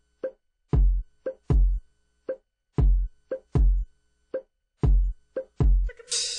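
Sparse electronic drum beat: deep kick-drum thumps alternating with short hollow pops, about two hits a second with gaps of silence between them.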